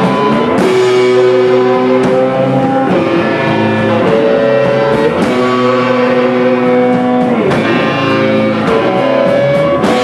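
Rock band playing live: electric guitar holding sustained notes over electric bass and drums, with cymbal hits every second or two.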